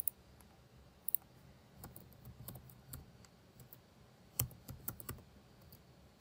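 Faint, scattered keystrokes on a computer keyboard: short clicks in small groups with pauses between them, as a short command is typed.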